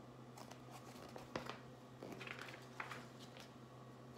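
Faint rustling of paper and a few light clicks and taps as a picture book's page is turned and the book is handled, with the sharpest clicks about a second and a half and nearly three seconds in.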